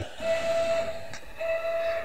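Stepper motors of a CrossFire CNC plasma table whining as the gantry jogs an incremental one inch in the negative Y direction: a steady high whine that breaks off briefly about halfway through and then resumes.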